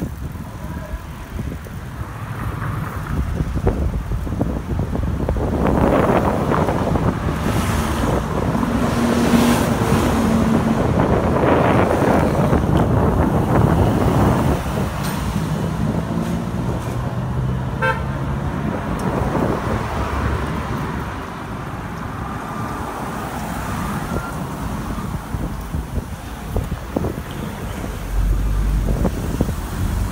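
Motor traffic passing on a town street, heard from a moving bicycle, with wind rumbling on the microphone. The traffic is loudest for several seconds in the first half.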